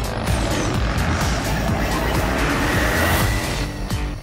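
Music mixed with a motorcycle engine running, a dense sound that holds steady throughout.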